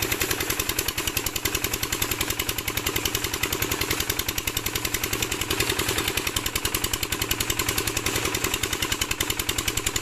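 8 HP single-cylinder diesel engine driving a tubewell water pump, running steadily with an even, rapid thudding of about ten beats a second.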